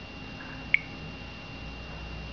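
Samsung Wave phone's touchscreen key tone: one short beep as the on-screen Yes button is tapped, with a fainter blip just before it. A faint steady high whine runs underneath.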